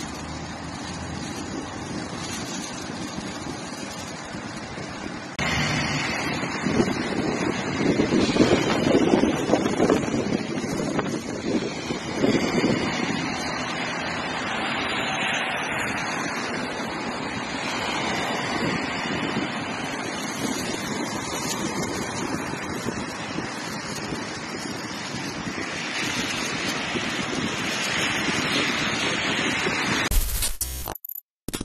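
Steady rushing noise of wind on a phone microphone, mixed with traffic on a wet road. It gets louder and gustier about five seconds in.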